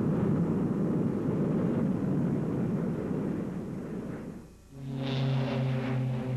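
Rumbling aircraft noise, then after a brief drop about four and a half seconds in, the steady drone of a Northrop P-61's twin piston radial engines at takeoff power.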